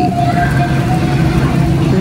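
Busy store ambience: a steady low hum with faint voices of other shoppers in the background.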